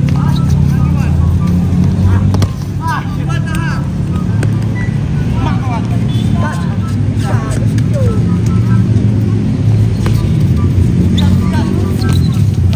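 Players shouting and calling out short words during a futsal game, with an occasional knock of the ball being kicked, over a steady low motor-like hum.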